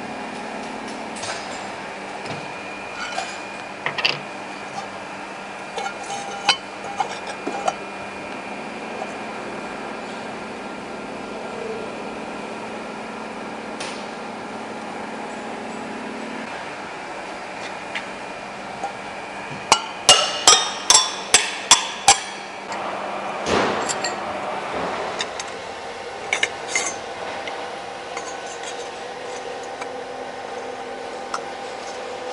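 A metal lathe runs while a grooving tool cuts through thin sheet steel, with small clicks of chips and metal. The machine's hum stops about halfway through. Later comes a quick run of about eight sharp, ringing metal knocks, the loudest sounds, then one more heavy knock.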